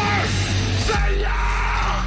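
Live heavy rock band playing: guitars, bass and drums, with the singer yelling two short phrases, one at the start and one about a second in.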